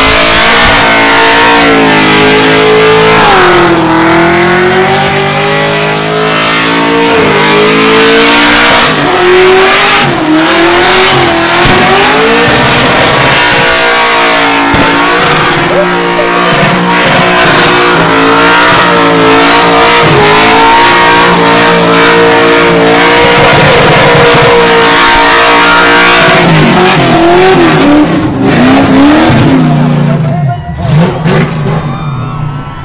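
Car engine held at high revs through a burnout, the revs wavering up and down as the rear tyres spin against the pad, with tyre squeal under it. It is very loud throughout, with a drop and rise in revs just before the end.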